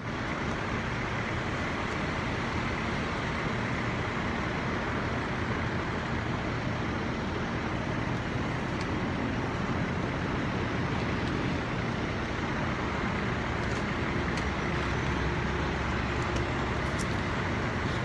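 Fire trucks' engines and pumps running steadily, an even, unchanging drone.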